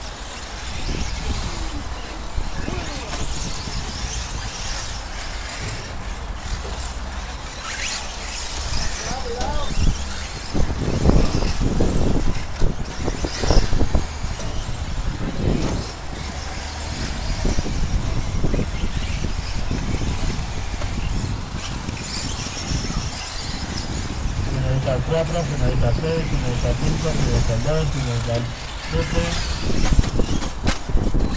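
Radio-controlled 4x4 short course trucks racing on a dirt track, heard under people talking nearby.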